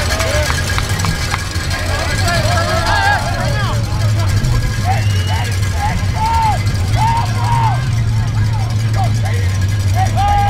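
Many overlapping distant shouts and calls from football players and the sideline, unintelligible, over a steady low rumble.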